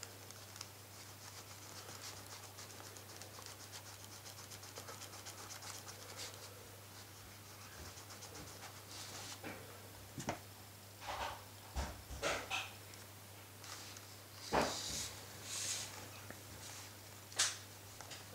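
White eraser rubbed quickly back and forth over a plastic mask to lift scuff marks, a fast, faint, scratchy rhythm for about the first half. Then a few separate knocks and rustles as the mask is handled, over a steady low hum.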